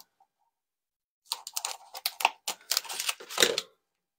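Ribbon spool being handled and ribbon pulled off it: a quick run of clicks and rustles that starts a little over a second in and stops just before the end.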